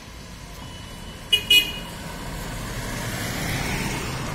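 A vehicle horn gives two short toots about a second and a half in, then a vehicle comes closer, its noise rising toward the end.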